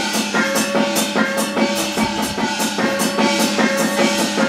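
Taiwanese opera stage accompaniment: a quick, steady drum beat under a held melody line, with no singing.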